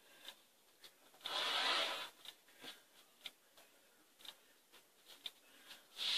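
Rotary cutter drawn through a layer of fiber fill on a cutting mat: one hissing pass lasting about a second, starting about a second in. Scattered light clicks and taps come from the cutter and ruler being handled.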